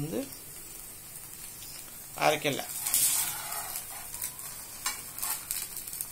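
Adai batter frying in ghee or oil on a hot dosa tava, sizzling steadily.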